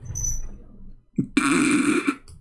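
Non-speech vocal noises from a man: a low rumbling sound, then about a second and a half in a loud, noisy, burp-like burst lasting under a second.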